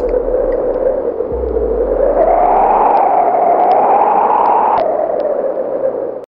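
Eerie wind-like sound effect over the channel outro: a hollow whoosh that rises slowly in pitch and drops away suddenly near the end, over a low rumble that stops about a second in.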